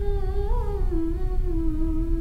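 A woman's solo voice singing one long held dikir barat line that wavers and slowly falls in pitch.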